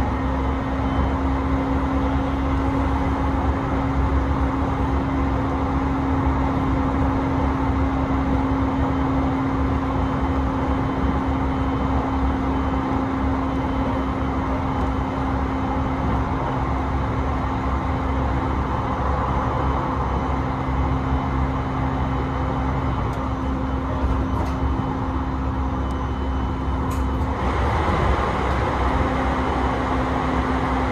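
E721-series electric train running at speed, heard from inside the carriage: steady rolling noise with a constant low hum. Near the end the noise turns brighter and hissier.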